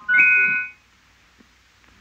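A single bright bell-like chime of several ringing tones sounds at the start and dies away within about a second. A faint click follows.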